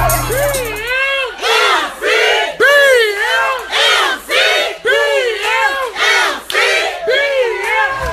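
A crowd chanting a rhythmic call: a loud rising-and-falling yell repeated about twice a second. Music with a bass line cuts off about a second in.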